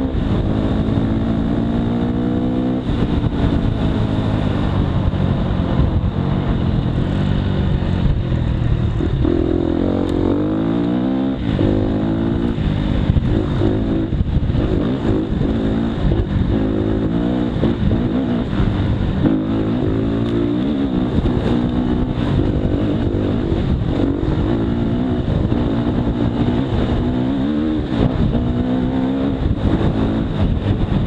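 Off-road motorcycle engine, heard from the rider's helmet, revving up and dropping again and again as the rider shifts gears and opens and closes the throttle.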